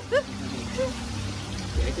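Water sloshing and bubbling in an aerated live-fish tank as a long-handled dip net is swept through it to catch a fish.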